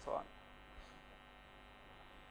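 Faint steady electrical mains hum with quiet room tone, after the tail of a spoken word at the very start.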